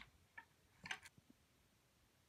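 Near silence broken by a handful of faint, short clicks and ticks during the first second or so, the clearest about a second in.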